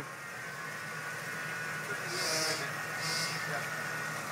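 Jeep Wrangler's engine running steadily at low revs, a low drone as it crawls slowly down a large rock, with short hissy noises about two and three seconds in.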